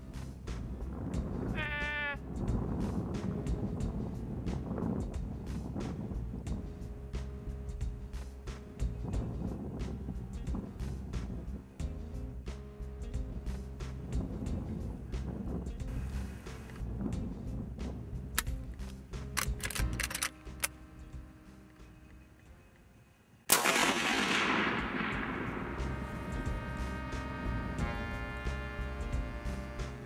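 Background music throughout. About three-quarters of the way through, the music drops away and a single loud .30-30 rifle shot cracks out, followed by a long rolling echo.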